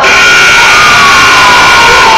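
Gym scoreboard horn sounding one steady blast as the game clock reaches zero, the end-of-game buzzer, over a cheering crowd.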